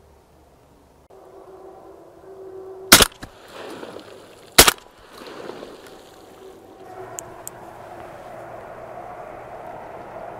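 Two loud, close shotgun shots about a second and a half apart, fired at two ducks that swam up on the water, both of which were downed.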